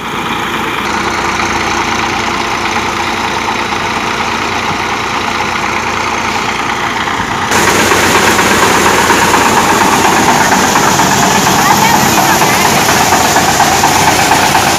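Mustard thresher running steadily off the PTO of a Massey Ferguson 241 DI tractor, its three-cylinder diesel held at about 1200 rpm to give 540 PTO speed, threshing well. The sound grows louder about seven and a half seconds in.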